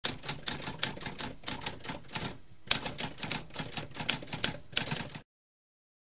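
Typewriter sound effect: keys struck in a quick, uneven run of about three to four strokes a second, with a short pause a little after two seconds in. The typing stops about five seconds in.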